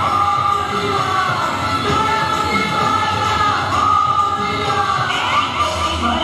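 Live garba song performance: a woman singing into a microphone with long, bending held notes over dense band accompaniment.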